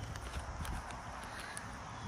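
Footsteps on a wood-chip mulch path: a run of short, irregular steps.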